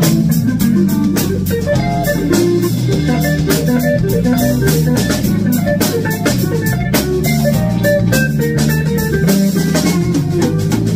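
Live jazz band: electric guitar playing over electric bass and a drum kit with a steady beat.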